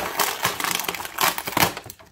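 Clear plastic packaging tray crinkling and crackling as an action figure is pulled free of it, a dense run of sharp clicks throughout that makes a lot of noise.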